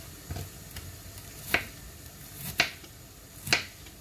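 Three sharp clicks or taps about a second apart, with a couple of fainter ticks before them, from hands working at something on a kitchen counter.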